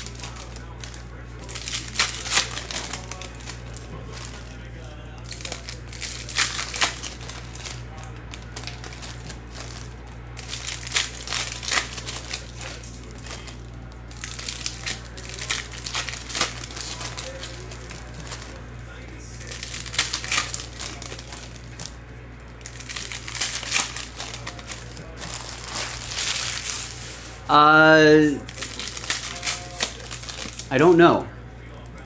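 Foil trading-card pack wrappers crinkling and tearing as packs are opened, in repeated bursts every few seconds. A short voiced sound comes near the end.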